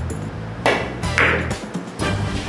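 Carom billiards shot: the cue strikes the cue ball and the balls click against each other, two sharp clicks about half a second apart. Background music plays underneath.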